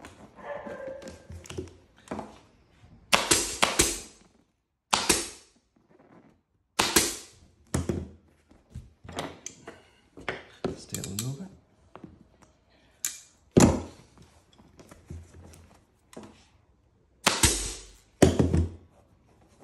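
Pneumatic upholstery staple gun driving 6 mm staples through a vinyl seat cover into a plastic motorcycle seat base. There are about a dozen sharp shots at irregular intervals, with quieter scuffing of the cover being handled between them.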